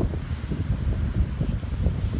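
Wind buffeting a handheld phone's microphone: an irregular low rumble that comes in gusts.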